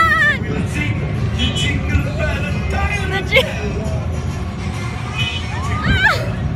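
Ride music playing over a steady low rumble, with riders' voices and a brief wavering high cry right at the start.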